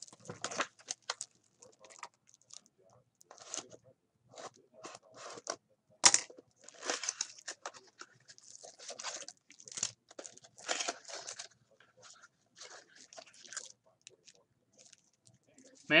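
A foil trading-card pack (2017 Bowman Chrome) being torn open and crinkled by hand, with cards slid out: irregular bursts of tearing and crinkling, the sharpest about six seconds in.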